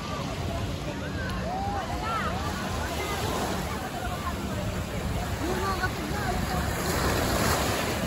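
Sea waves washing on a sandy shore, with wind on the microphone and a babble of many distant voices; a louder wash swells up near the end.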